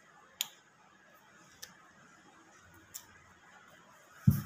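Three short, sharp crunches about a second and a quarter apart, the first the loudest, from biting into and chewing a small crisp chocolate-filled teddy-bear biscuit.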